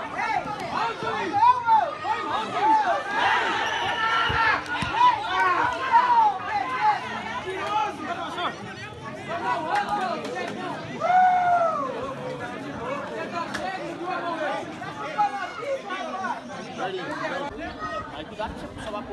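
Several men's voices shouting and calling out across a football pitch, overlapping, with a few louder shouts; no words are clear.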